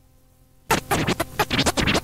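Faint hum, then about two-thirds of a second in an early-1990s hardcore rave DJ mix starts suddenly and loud, opening with choppy record scratching and cut-up beats.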